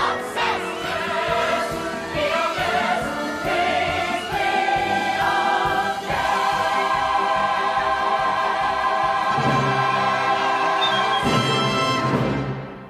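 Musical theatre score sung by a choir over an orchestra, building to a long held chord. The chord swells with low orchestral hits near the end.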